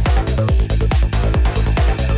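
Psytrance dance music: a steady four-on-the-floor kick drum at about two and a half beats a second, with a rolling bassline filling the gaps between kicks and synth layers above.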